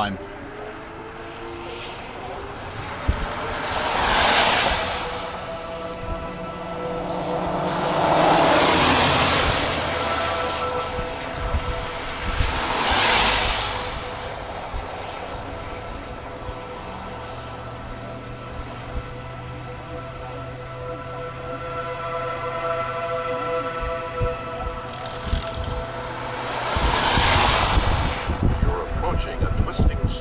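Vehicles passing on the road, four of them, each a rush of tyre and wind noise that swells and fades over a second or two, over a steady low hum.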